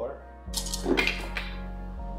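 A handful of dice rolled and clattering together in a quick burst of rattling clicks lasting about a second, starting about half a second in.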